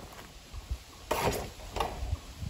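Two short rustling, scraping noises, one about a second in and a briefer one near the end, from frost-killed pepper plants and soil being handled.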